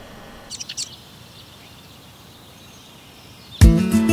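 Quiet background ambience with a few short, high bird chirps about half a second in. Loud music starts abruptly near the end.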